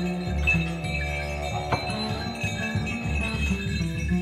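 Live spiritual jazz ensemble playing: hand bells and chimes jingle and ring over a repeating low bass figure.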